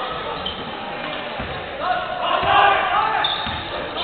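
Basketball bouncing on a hardwood court, a few separate bounces, with players' voices shouting in the hall about halfway through.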